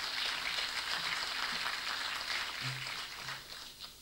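Audience applauding: a steady patter of many hands clapping that dies away near the end.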